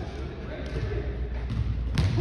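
Basketballs bouncing on a hardwood gym floor in repeated dull thuds, with a sharp knock near the end.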